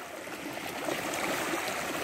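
Pond water splashing and churning steadily as a crowd of fish thrash at the surface in a feeding frenzy.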